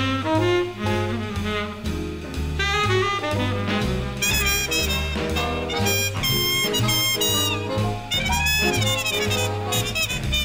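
Instrumental break of a swing-era big-band arrangement: saxophone and brass playing over a steady bass beat, with brighter, higher horn lines coming in about four seconds in.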